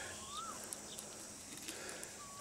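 Faint outdoor background noise with one brief, faint call that rises and then falls, about a third of a second in.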